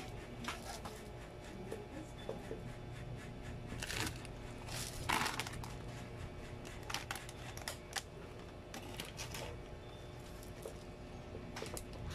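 Handling of packaged snacks in a cardboard box: scattered clicks and crinkles of plastic-wrapped cup noodle containers and chip bags, with a louder rustle about four and again five seconds in, over a steady low hum.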